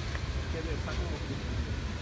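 Low, steady rumble of city traffic, with faint voices in the background.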